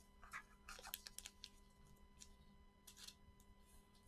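Near silence with faint, scattered crinkles and small taps: trading cards and pack wrappers being handled, busiest in the first second and a half.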